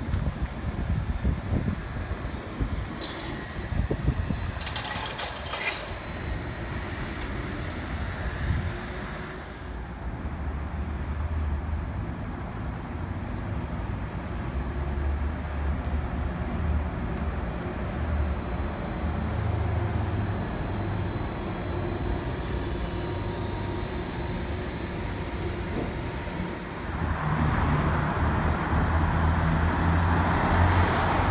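Road traffic with city buses and cars passing. A heavy vehicle's engine runs low and steady through the middle, and a louder passing vehicle swells up near the end.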